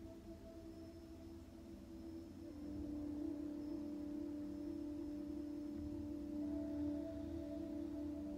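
Soft ambient meditation music of several sustained, ringing low tones, swelling louder about two and a half seconds in and then holding steady.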